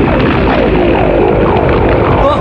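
Animated energy sound effect: a loud, continuous roar over a low rumble, with repeated falling warbling tones.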